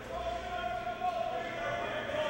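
Indistinct voices of several people talking in a large, echoing ice rink.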